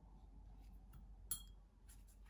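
One sharp clink with a brief ring a little past halfway, then a lighter tap near the end, as a paintbrush knocks against the watercolour palette. The background is faint room tone.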